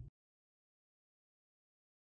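Silence: the soundtrack is blank, with no sound at all.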